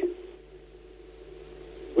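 A faint steady hum tone with low hiss: background noise on the interview's audio line, heard in a pause between speakers.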